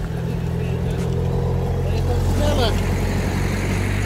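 A car's engine running close by, a steady low hum. A brief voice calls out about two and a half seconds in.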